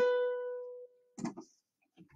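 A single musical note, B, plucked or struck on an instrument and fading for almost a second before it cuts off.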